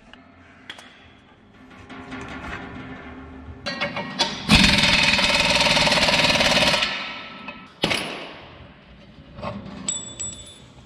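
Air impact wrench hammering in one loud burst of about two seconds while a disc is taken off a strip-till row unit, followed by a single metal clank.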